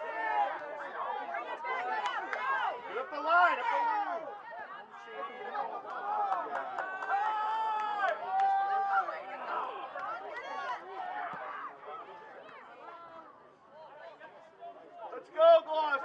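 Several voices calling and shouting over one another on a soccer field, players and sideline voices mixed, with one call held for a second or two midway. The calls thin out near the end before a sharp, loud shout.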